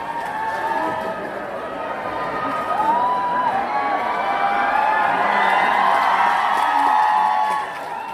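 Audience of fans cheering and calling out with many high voices at once. It swells louder in the second half and drops away just before the end.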